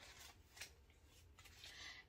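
Near silence with faint rustling and a few soft ticks as folded paper money is handled and tucked into a small pebble-grain leather zip pouch.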